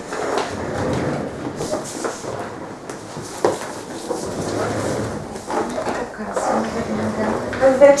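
Indistinct voices with shuffling and handling noises as people move about a small room, and one sharp knock about three and a half seconds in.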